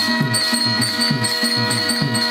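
Live instrumental music: a harmonium holding a steady chord over a regular hand-drum rhythm, with a light high jingle repeating on the beat.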